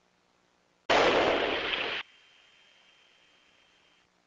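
A loud burst of rushing noise, about a second long, on the cockpit intercom audio, switching on and cutting off abruptly like an open mic channel being keyed, with only faint hiss and a thin steady tone before and after.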